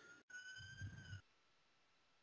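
Near silence, with a faint thin tone slowly rising in pitch that stops a little over a second in.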